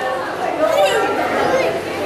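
Several people talking at once: a steady background chatter of overlapping voices.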